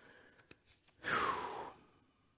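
A man's breathy sigh, an audible exhalation close to the pulpit microphone, about a second in and lasting roughly half a second.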